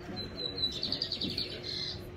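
A high-pitched chirping trill: a thin tone breaks into a quick run of repeated chirps, then ends in a short held note.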